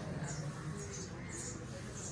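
Four or five short, high-pitched chirps, irregularly spaced, over a low steady hum.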